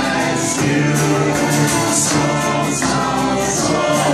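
Live folk band playing a carol-style song: a woman singing lead with other voices joining, over fiddle and acoustic guitar.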